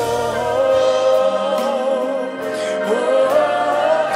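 Live Christian worship song: a male singer holds long sung notes into the microphone over the band, with backing voices.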